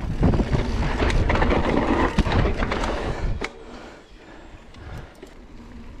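Full-suspension cross-country mountain bike rolling fast down a dirt singletrack: wind on the microphone and tyre rumble with drivetrain rattle, loud for the first three and a half seconds with a couple of sharp knocks, then dropping to a quieter rolling noise.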